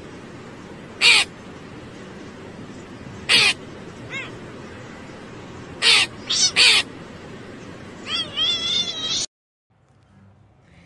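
A crow cawing and a cat meowing at it: short single calls a second or two apart, a quick run of three about six seconds in, and a longer wavering call near the end, over a steady hiss. The sound cuts off suddenly just before the end.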